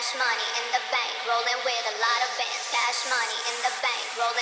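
Techno track in a DJ mix playing with its bass and kick drum cut out, as in a filtered breakdown. Only a busy, repeating pattern of pitched sounds in the middle and upper range is left.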